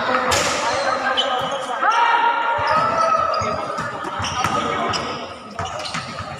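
A basketball game in play: the ball bouncing on the court floor, players' footfalls, sneakers squeaking (a drawn-out squeak about two seconds in), and players' voices calling out.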